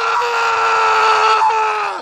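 A man's long scream held at one high pitch, dipping slightly and cutting off abruptly at the end.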